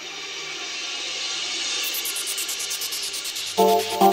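Trance music build-up: a rising white-noise sweep grows steadily louder, joined about halfway through by a fast, even pulsing in the highs. Near the end the synth chords and beat drop back in.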